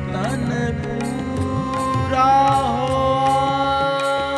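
Sikh shabad kirtan accompaniment: a harmonium holds sustained notes over a steady tabla beat of about two strokes a second, while a melodic line bends and dips in pitch a little past the middle.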